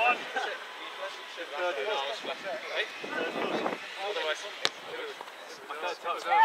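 Footballers' distant shouts and calls across the pitch, with one sharp thud about two-thirds of the way through, a football being kicked.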